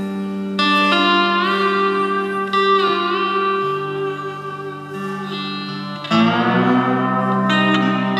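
Electric lap steel guitar played with a steel bar through a small amplifier: sustained chords struck a few times, the bar sliding up in pitch into the notes, each left to ring.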